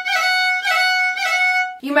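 Fiddle bowed on one sustained high note that is broken three or four times by quick, light grace-note flicks: a half roll, a four-note Irish fiddle ornament. The playing stops just before the end, and a woman starts speaking.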